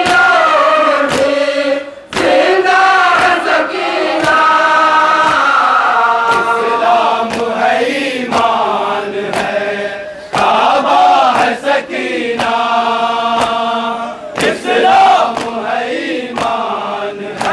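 A crowd of men chanting a noha in unison while beating their chests in matam. The chest slaps land in a steady rhythm of about one and a half a second, and the chant pauses briefly between lines.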